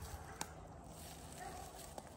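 Faint outdoor background with a single sharp click about half a second in and a faint dog bark near the end.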